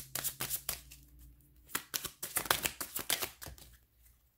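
Tarot deck being shuffled by hand: rapid runs of crisp card clicks and flicks, easing off briefly about a second in, then picking up again and stopping near the end.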